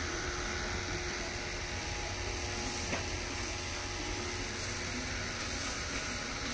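Steady background noise: a low rumble under an even hiss, with one faint click about three seconds in.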